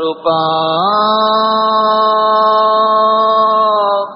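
A man chanting a Sanskrit mantra, holding one long note. The pitch slides up just under a second in and then stays steady.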